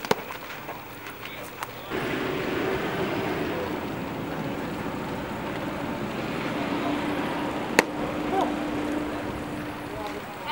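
Outdoor ballfield ambience: a steady background wash with a faint low hum and some distant voices. A single sharp crack about eight seconds in is the loudest sound.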